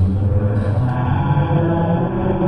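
A deep, steady drone with a chant-like quality, the low tones held without a break. The thin hiss above it falls away about a second in.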